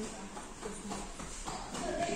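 Faint background voices with light shuffling of bodies on a vinyl grappling mat.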